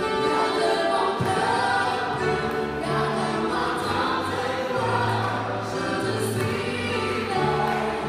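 Live worship music: women singing a slow song over a Nord Piano stage keyboard holding sustained bass notes, with an alto saxophone playing along.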